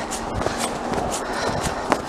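Footsteps walking through snow, an uneven run of steps.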